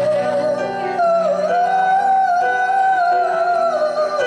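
A male vocalist holding one long high sung note with vibrato over piano accompaniment. The note steps up about a second in and falls away near the end.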